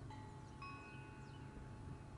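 Faint ringing tones at several pitches, each starting at a different moment and holding for about a second, over a steady low hum.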